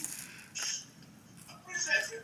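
Biting into and chewing a toasted sandwich: two short crunches in the first second, then quieter chewing. Talking starts near the end.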